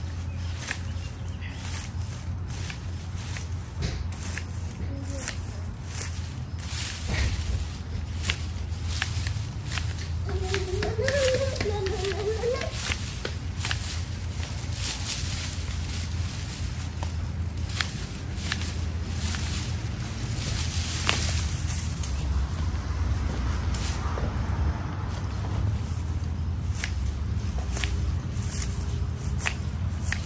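Garden loppers snipping through dry, dead plant stalks again and again at an uneven pace, with the rustle of the dry foliage being pulled away. A steady low hum runs underneath.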